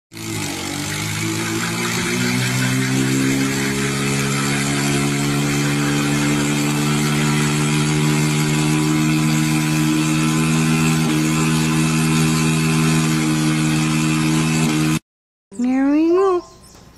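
A boat engine held at high revs while towing a parasail from the beach: it runs up over the first couple of seconds, then holds a steady drone under heavy load, with a wash of churning surf and spray. It cuts off suddenly near the end.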